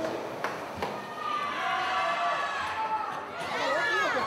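Indistinct voices talking in the background, with two short knocks in the first second and people calling out near the end.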